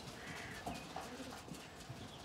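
A flock of Zwartbles sheep and lambs feeding at troughs: faint scattered clicks and rustles, with a few faint bird chirps.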